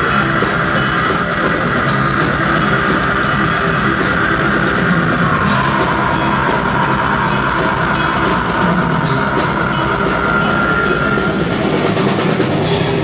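Heavy metal band playing live at full volume: distorted electric guitars and bass over a driving drum kit with regular cymbal hits, steady throughout.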